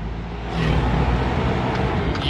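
Ambulance engine and road noise heard inside the cab while driving, swelling into a louder rush about half a second in as an oncoming motorcycle passes close by.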